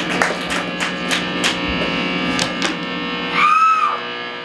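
Amplified electric guitar and bass playing loosely: a held, droning tone with picked notes about three a second, and a note that bends up and back down near the end.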